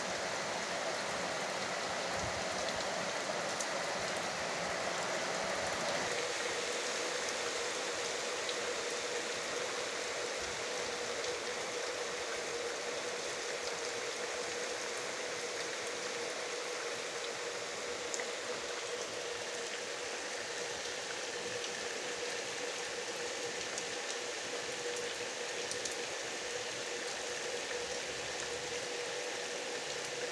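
Steady rain falling on a yard, hitting a plastic water tank and the wet ground.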